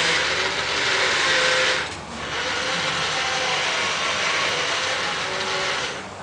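Toy excavator playing its engine sound effect: a hissy, engine-like noise that breaks off for a moment about two seconds in, resumes, and stops near the end.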